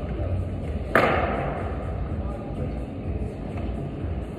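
A single sharp knock about a second in, the loudest thing here, over the steady low hum of a large indoor hall.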